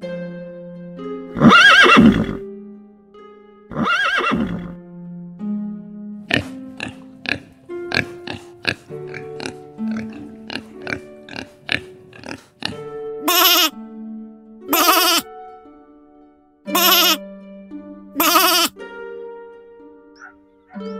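Background music with plucked notes, over which an animal gives six loud calls: two long ones in the first five seconds and four shorter ones in the last third.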